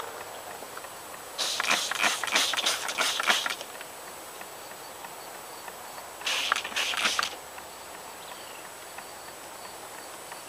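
Trigger spray bottle of water misting, pumped in a quick run of squirts for about two seconds starting a second and a half in, then a shorter run of squirts about six seconds in.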